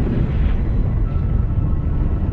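Deep, steady rumble of the explosion that broke up the Space Shuttle Challenger, with no sharp blasts or breaks.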